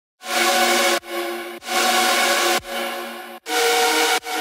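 Future bass supersaw chords from a software synth, a saw wave in Wavetable with eight-voice unison, playing longer held chords as the answer to a choppy chord rhythm. Each chord lasts about half a second to a second, with short breaks between them.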